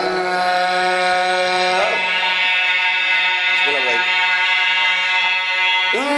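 A man singing a mourning chant in long, held notes, sliding to a new pitch about two seconds in and again near four seconds.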